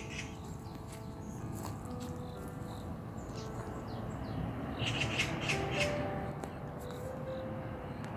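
Soft background music with long held notes, with a cluster of short high clicks about five seconds in.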